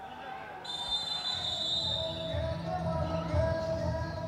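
Music starts about half a second in, with a high held tone over sustained middle notes, and a pulsing low beat joins about a second later.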